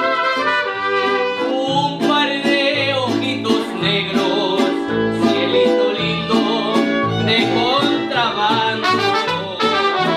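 A mariachi band playing, with trumpets leading over violin, guitarrón and guitars.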